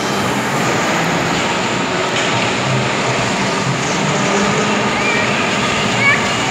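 Electric bumper cars running across a metal-strip floor: a loud, steady whirring din.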